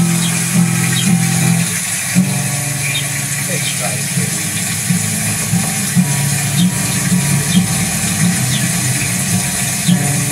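Acoustic guitar music played back through computer speakers, with repeated low strummed strokes over a steady hiss.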